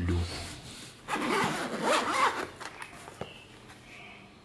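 The zipper of a Bowers & Wilkins headphone carrying case being pulled open around the case, loudest for about a second and a half starting about a second in.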